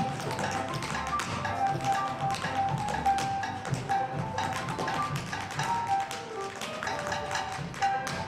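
Tap shoes striking a wooden stage in rapid, dense clicks as the cast tap-dances, over accompanying upbeat music.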